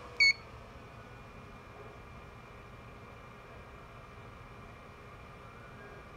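A Black & Decker 10-amp smart battery charger gives one short, high beep just after the start as it begins its diagnostic check of a motorcycle battery, then only a faint steady background follows.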